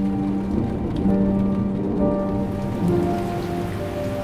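Steady rain falling, laid under background music of long held notes that change every second or so.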